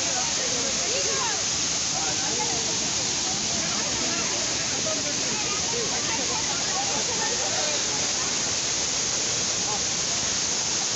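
Waterfall pouring down a rock face: a steady rush of falling water, with people's voices faint over it.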